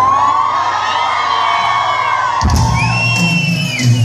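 Live band music with a singer holding a long note. The bass drops out and comes back in about two and a half seconds in, with whoops from the crowd.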